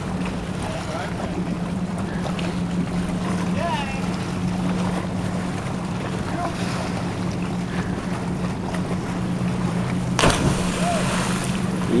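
Steady low hum of an idling boat motor, with faint distant voices. About ten seconds in comes a brief splash as a cliff jumper enters the water.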